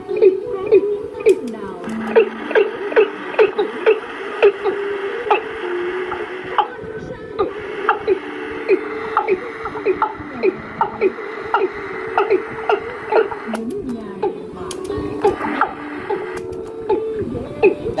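A recorded song played back from a cassette tape on a bare tape-deck mechanism through a speaker: a voice and melody over a steady beat of about two beats a second.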